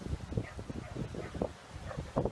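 Small dogs playing, giving short, scattered yips and barks among quick scuffling sounds.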